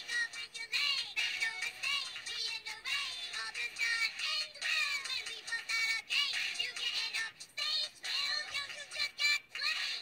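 Rap music: high-pitched voices rapping quickly over a beat.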